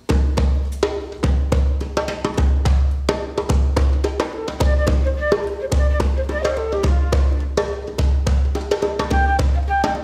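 Djembe hand-drumming starts suddenly in a quick, steady rhythm, joined about two seconds in by a flute playing a wandering melody, with low bass notes underneath.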